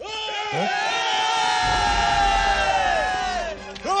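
A group of men yelling together in one long held battle cry, many voices at once, trailing off with falling pitch after about three and a half seconds.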